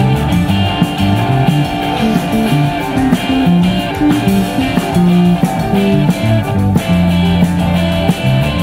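Live rock band playing loud, with electric guitar riffing over a moving bass line.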